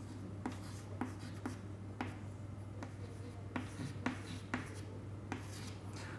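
Chalk writing on a chalkboard: about nine short, sharp taps and scratches, roughly two a second, as small circles and labels are marked. A steady low hum runs underneath.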